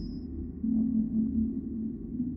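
Electronic logo-sting sound design: a deep, sonar-like synth drone that swells and dips in pulses. A high thin tone dies away right at the start.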